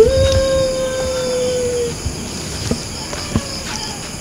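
A single long, steady call held for about two seconds, its pitch dipping slightly as it ends, over the constant chirring of crickets.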